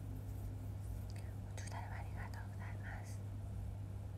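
A short whispered phrase, lasting about a second and a half, comes about halfway through over a steady low hum.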